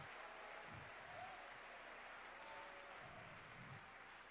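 Near silence: faint room tone of a large hall.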